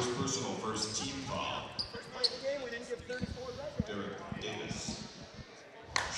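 Basketball gymnasium ambience during a stoppage: distant players' and spectators' voices echo in the hall, with a few scattered thuds of a basketball and footsteps on the hardwood court, and a couple of short sneaker squeaks.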